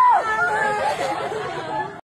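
Several high-pitched voices shouting and talking over one another, fading near the end.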